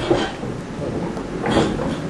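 Heavy iron edge-runner wheels of a black-powder rolling mill rolling round in their iron pan, grinding the damp powder mixture with a steady rumble that swells briefly about one and a half seconds in.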